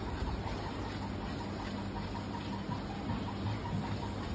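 A steady low machine hum with a hiss over it.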